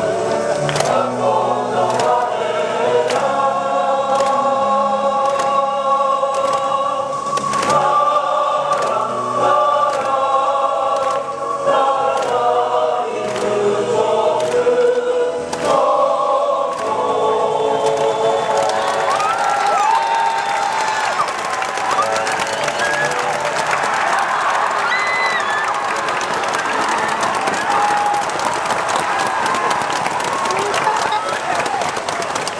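A school song played over the stadium loudspeakers, a choir singing with instrumental accompaniment, until about 18 seconds in. Then crowd applause and shouting take over.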